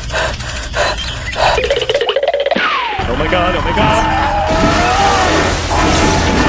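Edited cartoon-style soundtrack of music, voices and sound effects: a low steady hum with regular short strokes for the first half, then a long falling tone that wavers on over a heavier low rumble.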